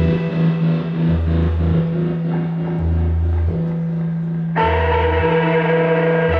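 Live psychedelic rock band playing: a held low drone with a deeper bass note pulsing on and off about every second and a half. Effects-laden electric guitar chords come in suddenly a bit past halfway.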